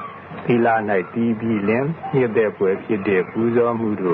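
A person talking, in a narrow-band, radio-like recording.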